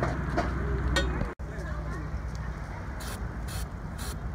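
Aerosol can of galvanizing compound: a few sharp clicks as the can is shaken, then two short hisses of spray about three seconds in, over a steady low rumble.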